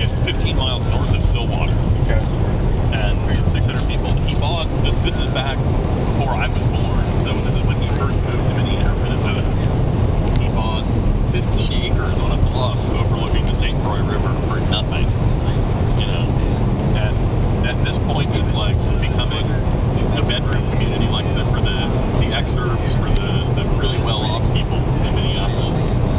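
Road noise inside a moving car's cabin: a steady low rumble of tyres and engine at highway speed.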